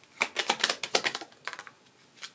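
Tarot cards handled on a tabletop as one is drawn and laid down: a quick run of about a dozen sharp card clicks and snaps over a second and a half.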